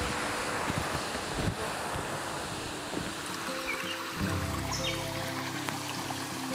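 Steady rushing hiss of stream water. Background music of long held low notes comes in about three and a half seconds in.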